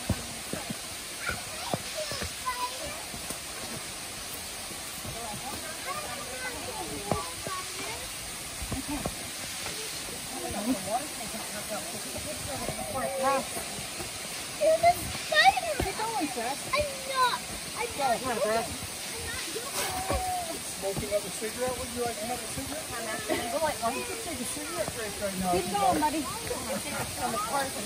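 Indistinct voices of several people talking and calling at a distance, with no clear words, over a steady background hiss.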